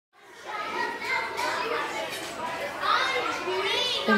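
Many children's voices chattering and calling out over one another, fading in at the start, with a high rising squeal near the end.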